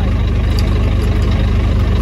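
A vehicle engine idling steadily: a deep, even hum with a fine regular pulse.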